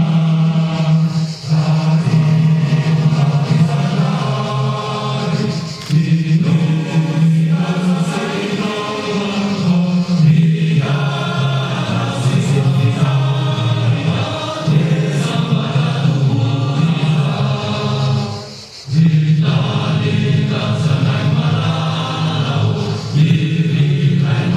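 A group of voices singing a song together in chorus, one man's voice carried through a microphone. The singing runs on with a few short breaks for breath, the longest about three-quarters of the way through.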